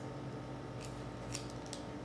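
A few short, faint crisp clicks and rustles from a paper or plastic piping bag of royal icing being handled, over a low steady hum.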